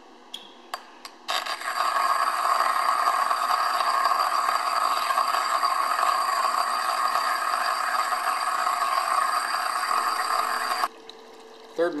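Joemars TR100 EDM tap burner's electrode sparking into a steel block under water: a loud, steady buzzing sizzle with bubbling. It starts after a few clicks about a second in and cuts off suddenly near the end, leaving a faint low hum.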